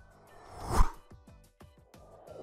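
A swelling whoosh transition effect that builds to a peak and cuts off sharply just under a second in, over quiet background music with a regular beat.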